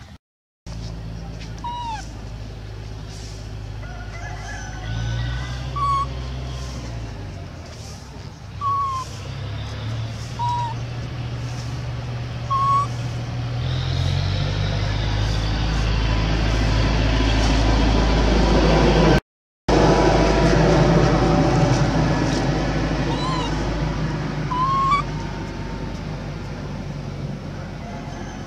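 A motor engine running steadily with a low hum that shifts in steps and swells to its loudest in the second half, with short high chirps now and then.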